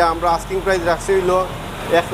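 A man speaking in Bengali, over a low steady hum of street traffic.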